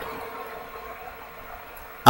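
Quiet room tone: a steady faint hiss with a faint hum, and no distinct events.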